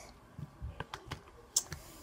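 A handful of light, irregular clicks and taps, about seven in two seconds, from hands knocking on and handling things at a desk; the loudest comes a little past halfway.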